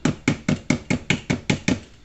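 Electric hand mixer's metal beaters knocking against the mixing bowl in a quick, even rhythm of about five sharp knocks a second.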